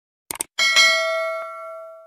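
A quick click sound effect, then a notification bell ding that rings out and fades over about a second and a half: the subscribe-button and bell-icon sound of a channel intro.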